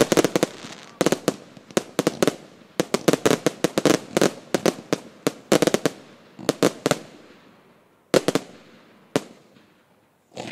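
Aerial fireworks bursting: dense volleys of sharp bangs and crackles in three clusters, thinning to two lone reports near the end as the display dies out.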